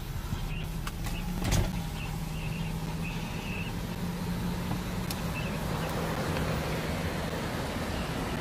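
Car engine idling, heard from inside the cabin: a steady low hum, with a single thump about a second and a half in.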